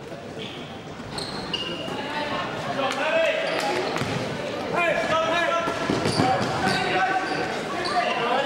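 Indoor basketball game: sneakers squeaking on the court, the ball bouncing, and players and spectators shouting as play moves up the floor, louder from about three seconds in, with the echo of a large gym.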